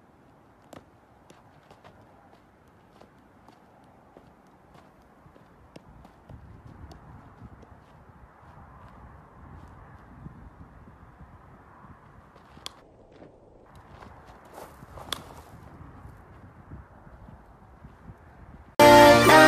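Footsteps on gravel and soft taps as a baseball is kicked up and handled, with a sharp crack about fifteen seconds in from a bat striking the ball.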